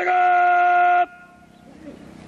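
A parade commander's shouted word of command, its final syllable held on one steady pitch for about a second and then cut off sharply, with a brief faint echo after it.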